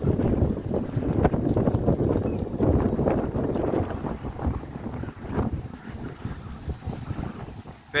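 Wind buffeting the microphone in uneven gusts, heaviest through the first half and easing near the end, over the noise of street traffic.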